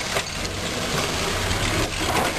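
Series Land Rover short-wheelbase engine running steadily under load as the vehicle drives over a muddy off-road slope, a steady low engine note under a noisy haze.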